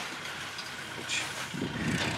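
Low, steady background noise with no clear source, with a brief faint sound about a second in.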